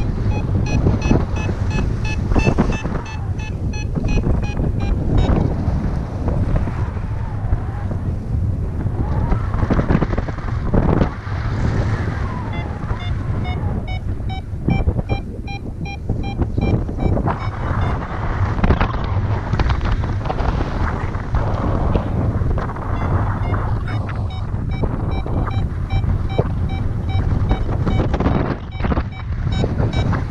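Wind buffeting the microphone in paraglider flight, with a flight variometer beeping rapidly in several stretches, near the start, in the middle and in the last few seconds; its beeping signals the glider climbing in lift.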